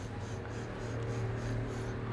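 Low steady hum in a small room, with faint soft handling noises as a small vape pod is turned in the hands.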